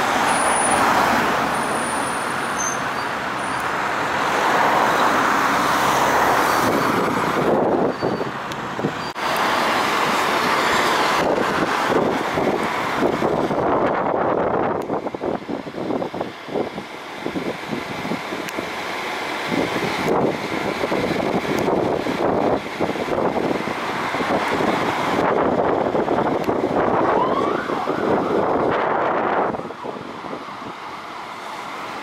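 Fire engines' diesel engines running as a MAN TG fire engine moves off and drives along the street, mixed with passing road traffic.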